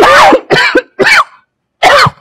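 A woman coughing four times in quick succession, each a short, harsh cough with her voice in it, about half a second apart.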